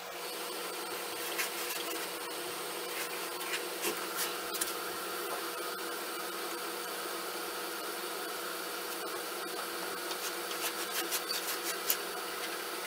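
Steady machine noise with a faint constant hum, with a few light clicks and scrapes of hand tools on wood near the end.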